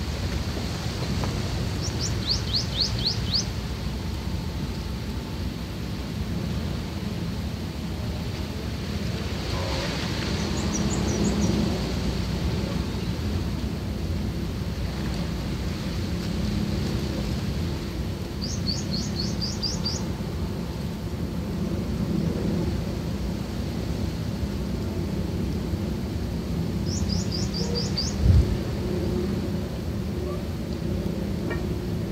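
A small bird's short trill of about six quick falling notes, repeating four times roughly every eight seconds, over a steady low rumbling background noise. One short low thump comes near the end.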